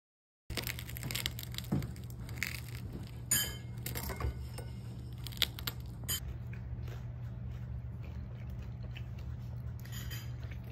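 Scattered clicks and scrapes of a metal fork against a ceramic plate as soft tofu is cut, mostly in the first six seconds, over a steady low hum.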